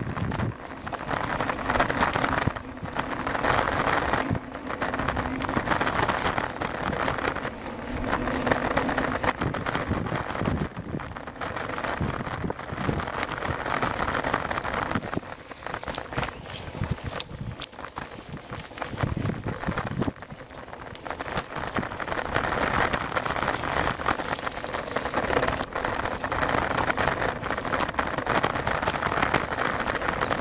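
Bicycle riding over a rough dirt and gravel track, picked up by a camera on the handlebars: a steady crunching, rattling noise full of small knocks, easing off for a few seconds around the middle.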